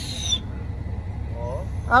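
Packing tape being ripped off a cardboard box: one short, screechy tear with a falling whistle-like edge at the very start, over a low steady hum.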